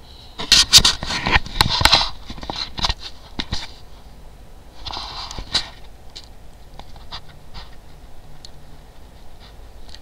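Close handling noise on the webcam's microphone: a quick run of knocks and rubs in the first two seconds, then scattered clicks and a short hiss about five seconds in.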